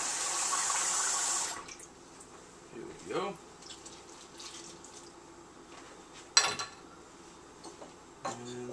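Kitchen tap running to fill a measuring cup with warm water, shut off after about a second and a half. Later comes one sharp clack, the loudest sound, about six and a half seconds in.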